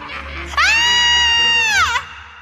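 A young woman screaming in fright: one long, high scream of about a second and a half that starts about half a second in, holds its pitch and drops away at the end.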